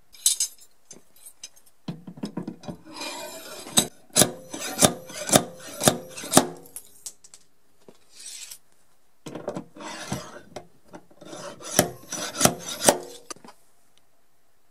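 Plastic dent-repair pulling tabs and tools being handled against a car body panel: two runs of rubbing and scraping with many sharp clicks, the first about two seconds in, the second from about nine seconds in.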